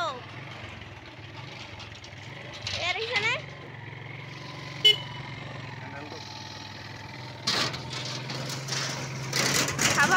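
Motorcycle engine running with a low, steady hum. Near the end, louder rushing road and wind noise builds as the bike moves off. There is a sharp click about five seconds in.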